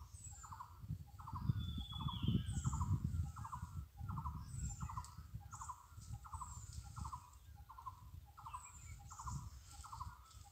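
Forest wildlife: an animal repeats a short call about twice a second in a steady rhythm, while small birds give thin, high chirps every second or so and one falling whistle. A low, uneven rumble runs underneath.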